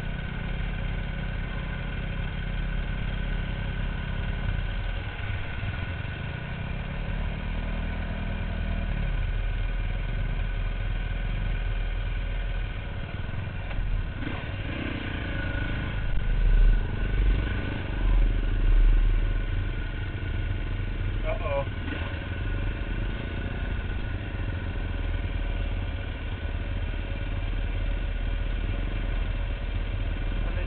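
Dirt bike engines idling steadily, with a louder stretch of low rumble a little past the middle.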